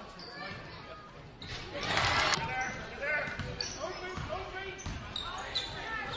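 Basketball game sound in a gymnasium: a ball being dribbled on the hardwood court under the chatter of spectators' voices, with crowd noise swelling briefly about two seconds in.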